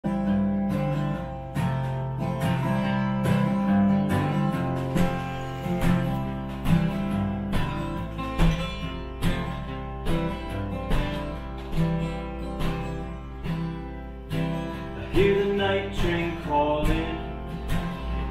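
Steel-string acoustic guitar strumming chords in a steady rhythm.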